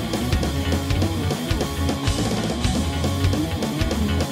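Punk rock band playing an instrumental stretch of a song: distorted electric guitar and bass over a driving drum beat, with no singing.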